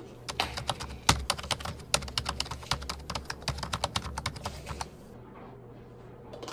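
Quick, irregular clicks and rattles of small hard objects being handled at a kitchen counter, several a second, stopping about five seconds in.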